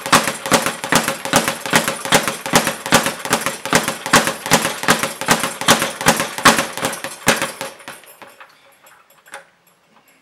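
Speed bag being punched against its overhead rebound platform: a fast, steady run of hits, several a second, that dies away about three-quarters of the way through, followed by one lone tap.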